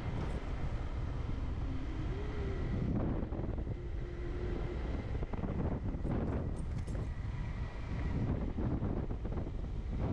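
Motorbike riding along a rough dirt road: its engine running under steady wind noise on the microphone, with scattered knocks and rattles from the bumps in the second half.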